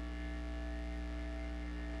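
Steady electrical mains hum: a low, unchanging drone with a few higher steady tones above it.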